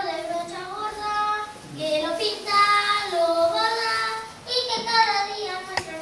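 A child singing a melody in long, held notes, with one sharp click near the end.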